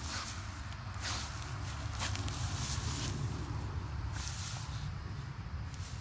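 Dry fallen leaves rustling in several short bursts, roughly a second apart, as a Great Dane shifts her body and roots her nose in the pile, over a steady low rumble.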